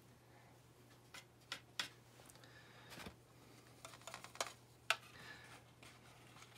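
Faint, scattered clicks and taps of a paintbrush working paint in a plastic palette while mixing colour, over a low steady hum.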